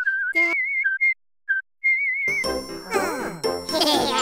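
A few short, high whistled notes with a wavering pitch, broken by a brief silence. About two seconds in, lively cartoon music with tinkling chimes and sliding notes comes in.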